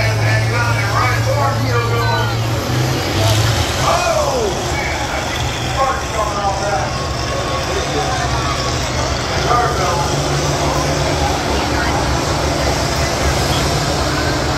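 Large diesel combine harvester engines running with a steady low drone, with people's voices talking over it.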